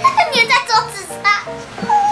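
A child's high-pitched voice over steady background music.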